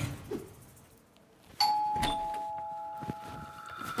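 A two-tone ding-dong doorbell chime rings once, about one and a half seconds in. The two notes ring on and fade away over about two seconds.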